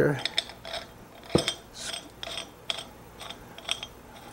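Metal parts of a meat grinder head clicking and clinking as the cutting plate is fitted on, in a run of small irregular clicks with one sharper knock about a third of the way through.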